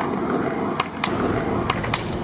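Skateboard wheels rolling over paving with a steady rumble and a few light clicks. Near the end comes a sharp crack: the tail snapping against the ground as the board is popped into a flip trick.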